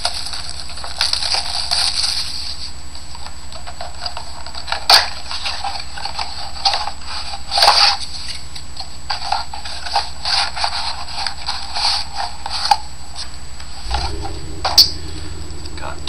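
Cardboard trading-card box being handled and opened by hand: light scraping with a few sharp taps and clicks, over a steady background hum and hiss.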